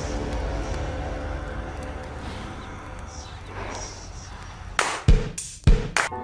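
Dark trailer soundtrack: a sustained low drone with a steady hum of held tones, ending with two heavy, booming hits about half a second apart near the end.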